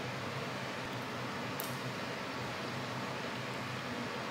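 Steady room tone: an even low hiss with a faint hum, broken only by one small click about one and a half seconds in.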